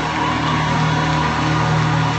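Worship band holding one low sustained chord, steady, with no singing or speech over it.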